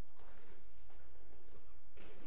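Footsteps of hard shoes on a floor, a few evenly spaced knocks about half a second apart, over a low steady room rumble picked up by the podium microphone.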